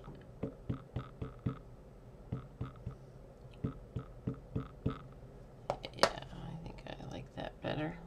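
An ink pad dabbed repeatedly onto a rubber stamp mounted on a clear acrylic block, giving light taps about three or four a second in two runs, to ink a stamp from a pad that is drying out. A single sharper click follows about six seconds in.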